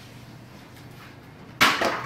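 Quiet room tone, then about one and a half seconds in a single sudden, loud knock with a brief rattling tail: a hard impact during indoor wiffle ball play.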